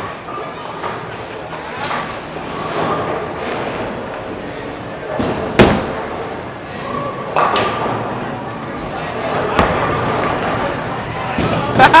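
A bowling ball dropped hard onto the lane from an underhand 'grandma roll', landing with a loud thud about five and a half seconds in, then rolling away, with a few lighter knocks later, over the steady din and voices of a bowling alley.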